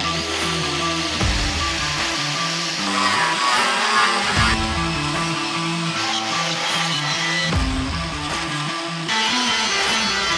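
Background guitar music with a moving bass line.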